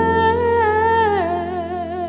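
A woman's solo voice holding a long wordless note over a sustained low piano chord. The note steps down in pitch a little over a second in and is then held with a wide vibrato.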